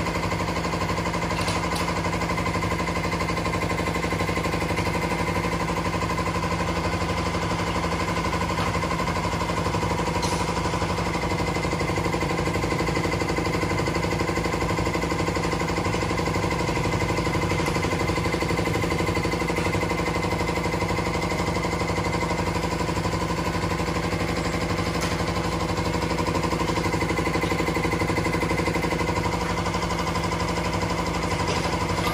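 A motor running with a steady, unchanging hum, with a few faint clicks on top.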